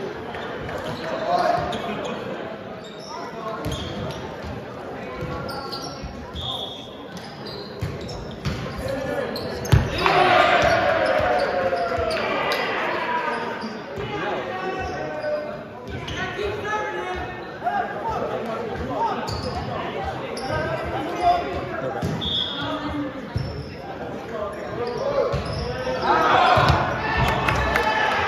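Volleyballs being hit and bouncing on a hardwood gym floor: scattered thuds that echo in the large hall, mixed with players' shouts and chatter.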